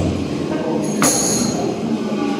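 Live psychedelic rock band (electric guitar, drums and keyboards) in a quieter, noisy passage: a dense, droning wash with a sharp hit about a second in and high, squealing tones around it.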